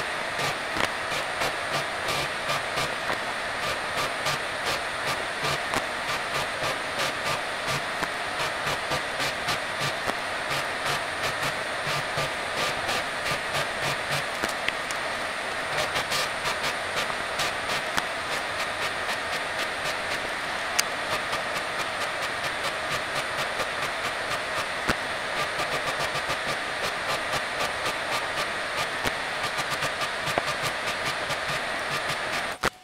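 Drill press motor running steadily while a 16 mm drill bores a row of holes in a wooden board, with an even clicking rhythm of about two to three clicks a second.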